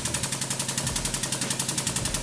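Hydraulic press running as its ram presses down on a toothpick structure. The press's pump motor gives a steady, rapid pulsing of about ten beats a second.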